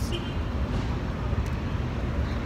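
Low, steady rumble of city street background noise.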